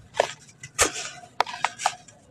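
Hands crumbling a dry block of packed sand and dirt: about five sharp crunches and crackles, with a soft hiss of powder pouring between them.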